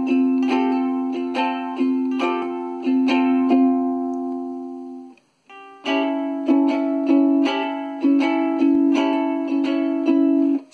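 Ohana ukulele strummed in a rhythmic chord pattern with a hammer-on: the first finger holds the first fret of the E string while another finger hammers onto the second fret of the G string, making an F chord. The pattern plays twice, with a short break about five seconds in.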